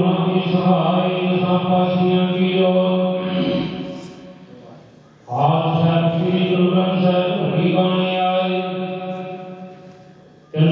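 Male voices chanting a prayer through a microphone in long phrases held on one steady note: one phrase fades out about four seconds in, and a second begins about a second later and fades near the end.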